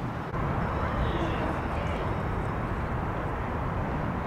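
Wind buffeting the microphone high up in the open air: a rough, uneven rumble with a hiss that thins out toward the top.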